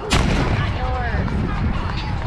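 A baseball fouled straight back strikes the backstop right by the microphone: one loud, sharp bang just after the start.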